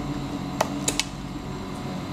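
Cooked crab claw shell cracking: three short, sharp clicks in quick succession, over a steady low hum.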